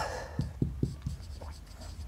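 Marker pen writing a word on a whiteboard: a quick series of short pen strokes.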